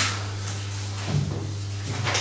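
Handling noise at a council table with microphones, as papers and objects are moved: a sharp knock at the start and a softer bump about a second in, over a steady low electrical hum.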